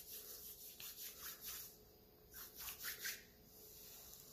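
Faint rubbing of oiled hands, palms worked together and then into a beard, heard as a run of soft brushing strokes with a short pause in the middle.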